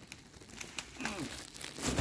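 Dry twigs and brush rustling and crackling as they are handled and stepped through, with a sharp snap near the end.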